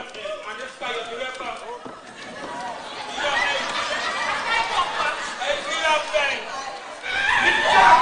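Several actors' voices talking and calling out over one another, crowding together and growing louder from about three seconds in.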